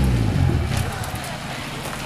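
Nissan S13's engine coming off high revs after a drift, its note falling away in the first half-second, then running steadily at lower revs as the car rolls on.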